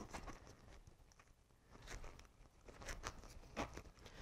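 Faint, scattered rubbing and light clicks of a rubber RC car tire being worked by hand onto a plastic wheel.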